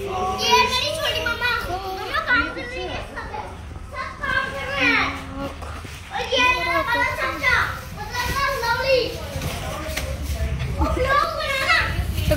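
Children's high-pitched voices talking and calling out, one after another almost without pause, over a low steady hum.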